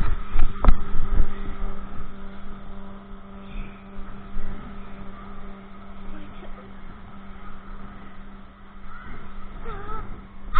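A steady machine hum at one fixed pitch, with low rumbling and two sharp knocks in the first second from the camera being bumped in the snow.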